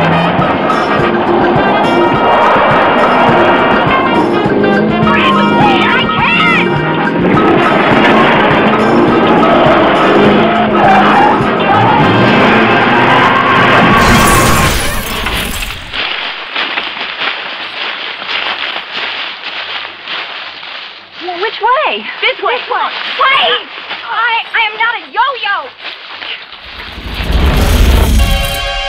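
Film soundtrack with music and voices. About halfway through comes a loud, noisy burst, after which voices carry on more quietly.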